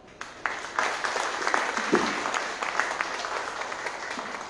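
Audience applauding with many hands clapping; it starts right after the introduction ends and slowly dies down.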